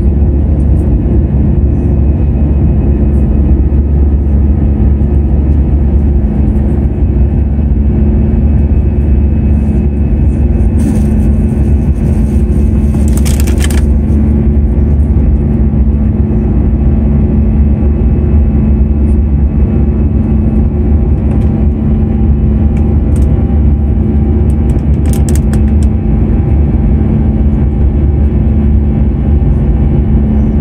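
Cabin noise of an Airbus A320 climbing after takeoff, heard from a window seat beside the engine: a loud, steady engine drone over a low rumble with a held hum. Brief hissing noises come about 11 and 13 seconds in and again around 25 seconds.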